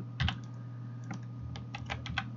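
A handful of short, sharp clicks from a computer keyboard and mouse, irregularly spaced, over a steady low hum.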